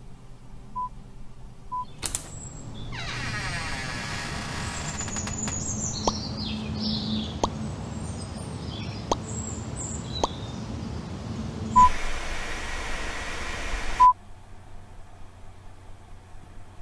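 Electronic outro soundtrack: a few short beeps, then a steady hiss with a low hum, carrying high chirps and scattered clicks. Near the end come two loud beeps, and after the second the hiss stops suddenly.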